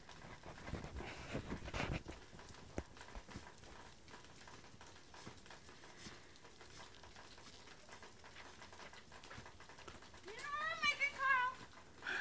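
Faint crunching and patting of snow as a child packs snow by hand onto a mound, with a few soft crunches in the first couple of seconds. A child's voice speaks briefly near the end.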